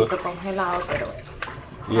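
Speech: a voice talking briefly, then a quieter pause.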